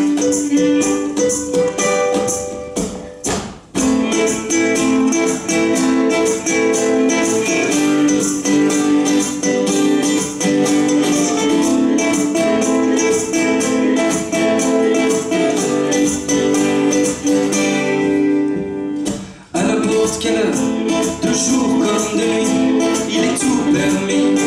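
Live acoustic folk band playing an instrumental introduction on acoustic guitar, ukulele and violin, over a steady beat from a kick drum. The music drops out briefly twice, about three and a half seconds in and again about nineteen seconds in.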